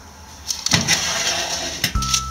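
Oven door being opened: a light click about half a second in, then a clunk and a steady rush of noise, ending in a sharp click near the end.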